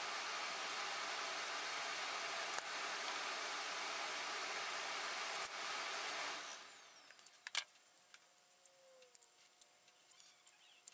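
A steady rushing hiss that fades out about six and a half seconds in, followed by a few faint clicks and taps.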